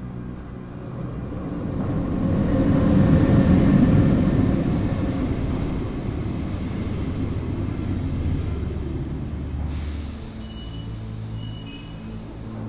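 Trenitalia passenger train running past close by, a rumbling rush of carriages that swells to its loudest about three to four seconds in and then eases off, with a short hiss near the end.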